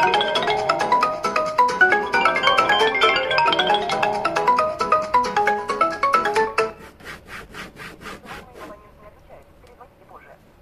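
Several smartphone ringtones for incoming calls play at once, their short melodic notes overlapping. They stop suddenly about six and a half seconds in. A faint rapid ticking follows for a couple of seconds.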